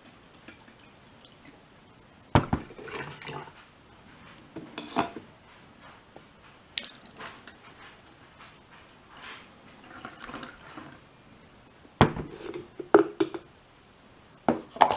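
Water pouring from a glass measuring cup through a plastic funnel into plastic bottles, trickling and dripping in spells. Sharp knocks of glass and plastic being handled come about two seconds in and twice near the end.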